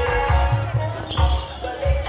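Live Bantengan accompaniment music: deep drum beats at about three a second with a sustained pitched melody over them.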